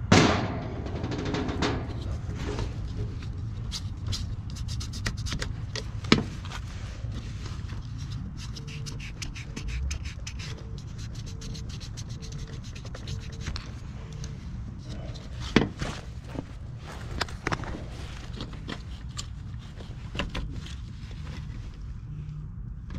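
Gloved hands handling wires and a relay inside an HVAC unit's control box: rubbing and scattered clicks over a steady low hum. Midway, a faint tone beeps repeatedly for several seconds.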